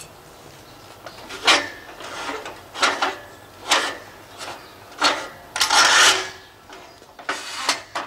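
Metal scaffolding being shifted by hand on paving stones: about six short scrapes and knocks, the longest one around six seconds in.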